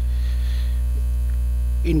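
Steady low electrical mains hum picked up by the recording.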